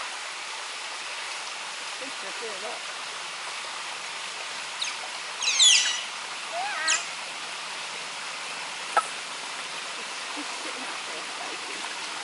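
Steady hiss of running water in a forest stream, with a few quick, high descending bird chirps around the middle and a single sharp click near the end.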